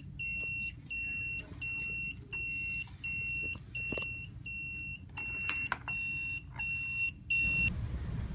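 Electronic buzzer of a microcontroller code-breaker game beeping a single high tone, evenly a little more than once a second, stopping shortly before the end; the beeping signals that the game has been won.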